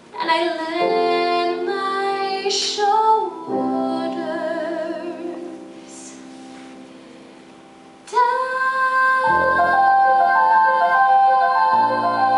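Female musical-theatre vocalist singing long held notes with vibrato over piano accompaniment. The singing eases off about three and a half seconds in, and a loud sustained note comes in at about eight seconds over changing chords.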